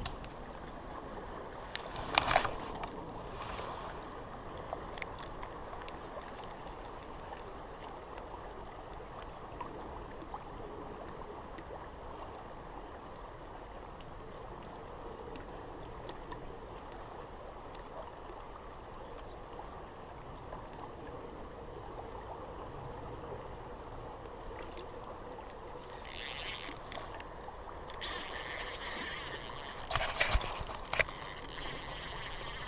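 Steady rush of river water flowing past a rocky bank. A single knock about two seconds in, and loud rubbing and handling noise on the microphone in the last few seconds.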